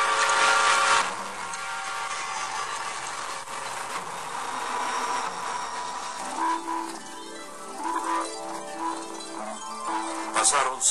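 Eerie background music with no words: a loud, hissing swell in the first second settles into a sustained noisy wash, and slow held notes of a melody come in over the second half.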